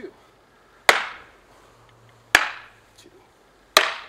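Practice swords hitting each other in a block-and-strike drill: three sharp cracks, evenly spaced about a second and a half apart, each ringing off briefly.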